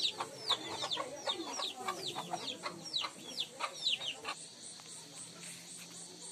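Chickens calling: a rapid run of short, high, downward-sliding peeps, several a second, which thin out after about four seconds.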